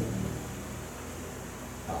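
A pause in a man's speech, filled by steady low room hum and hiss, with a short "ah" from the man near the end.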